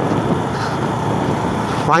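Motorcycle on the move: the engine runs steadily under a rush of wind noise on the microphone.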